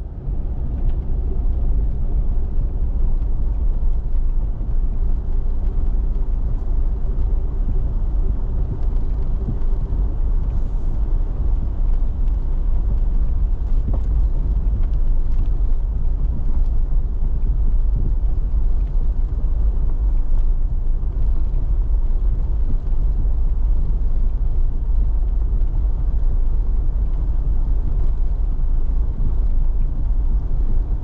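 Jeep driving on a dirt road, heard from inside the cab: a steady low rumble of engine and tyres. A faint engine tone fades out about ten seconds in, and there are occasional light ticks.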